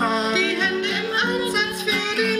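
Live acoustic music: a voice singing over an acoustic guitar accompaniment.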